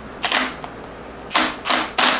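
Small Torx screws being driven into the VTC gear cover of a Honda K24 engine: three short bursts of driving noise, one about a quarter second in and two close together near the end.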